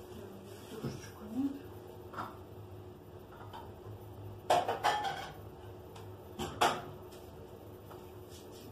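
Dishes and utensils being handled on a kitchen counter: a quick cluster of clinks about halfway through, then two sharp knocks a moment later.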